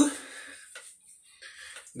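A man's speech trails off into a short quiet pause holding only faint handling noise from an elastic cord with carabiners being turned in his hands, before talking starts again at the end.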